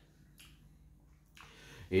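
A pause in a man's speech: a faint mouth click early in the pause, then a breath drawn in just before he starts talking again.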